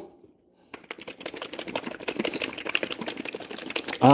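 Spice grinder being twisted by hand over food: a dense, rapid run of small crunching clicks that starts after a moment of silence and keeps going.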